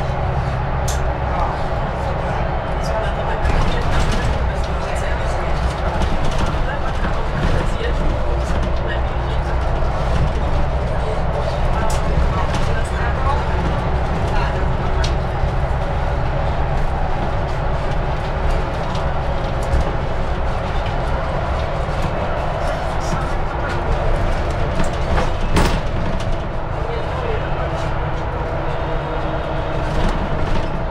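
Inside a Mercedes-Benz Citaro city bus on the move: its diesel engine runs with a steady low drone under road noise, with a few short clicks and rattles.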